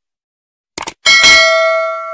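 Sound effects of a subscribe-button animation: a short click, then a bell ding about a second in that rings with several clear tones and slowly fades.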